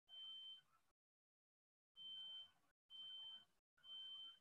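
Faint high-pitched electronic beeps: a steady tone in short half-second beeps, four of them at uneven intervals, with dead silence between.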